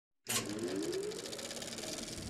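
Intro sound effect for a title card: it starts suddenly about a quarter second in, with a slowly rising tone over a fast, even pulsing texture.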